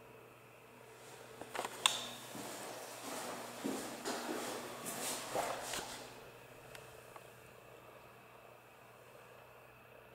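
Footsteps and rustling movement in an empty room, with a sharp click about two seconds in and several smaller knocks over the next few seconds. A steady low hum runs underneath throughout.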